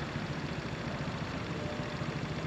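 Small motor scooter's engine idling steadily at close range.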